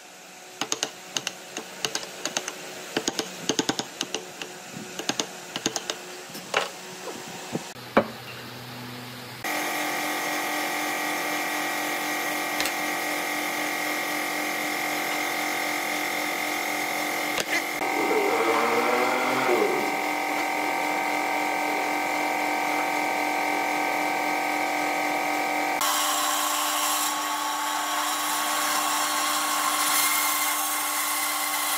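Wood chisel splitting chips off a turned wooden sphere: a quick run of sharp cracks and taps for about the first nine seconds. Then a steady machine hum with several held tones. About four seconds from the end this changes to a band saw running through a wooden block.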